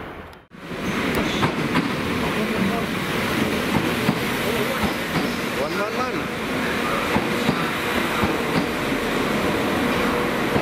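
Passenger train running along the platform, its wheels clicking over the rail joints under a steady rumble of the train moving.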